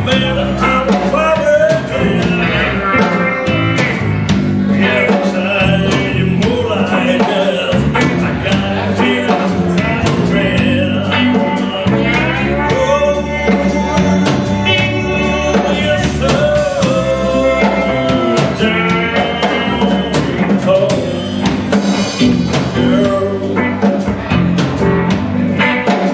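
Live blues played by a small band: electric guitar, electric bass and drum kit, with steady drum strokes under pitched lines that bend up and down.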